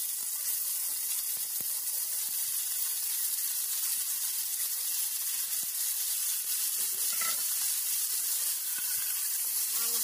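Pork pieces frying in hot rendered pork fat in a small pot: a steady high sizzle, with a few faint clicks as pieces go in.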